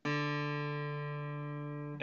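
A single open string on an acoustic guitar, the fourth string tuned to D, plucked once and left ringing as one sustained note that slowly fades. It is the D of a DADGAD tuning, sounded on its own to show that string's pitch.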